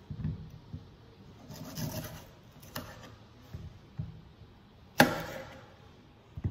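Chef's knife cutting and scraping the peel off green bananas on a wooden cutting board: a few soft knocks, a scraping stretch about two seconds in, and one sharp knock on the board about five seconds in, the loudest sound.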